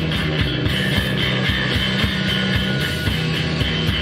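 Live improvised rock jam: guitar over sustained low bass notes, with a steady beat.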